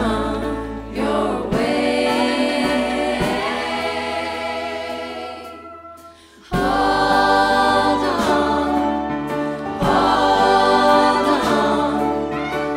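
Gospel choir singing with a band in a live song. A held chord fades away over a few seconds, then the full choir comes back in suddenly about six and a half seconds in.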